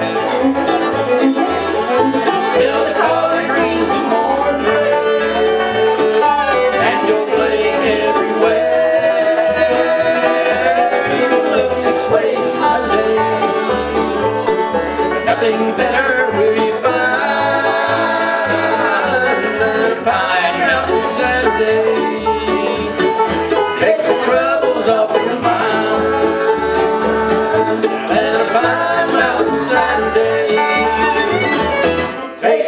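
Live bluegrass band playing an instrumental stretch: banjo, fiddle, acoustic guitar and mandolin over a steady, evenly paced bass line, with no singing.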